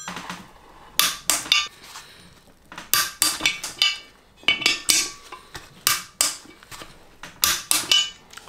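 Metal tools and rim hardware clinking during three-piece wheel rim assembly: a string of sharp, irregular metallic clicks and taps in small clusters, some ringing briefly.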